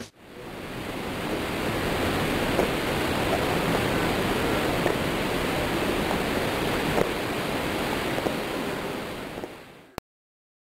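Outdoor ambience: a steady rushing noise that fades in over the first two seconds and fades out near the end, with a couple of faint taps, the clearest about seven seconds in.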